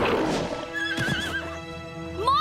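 A unicorn gives a short whinny with a wavering pitch about a second in, over background music. A short rush of noise comes at the very start.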